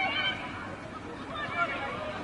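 Shouts and calls during a women's football match: a short high-pitched call at the start and more calls about a second and a half in, over steady outdoor background noise.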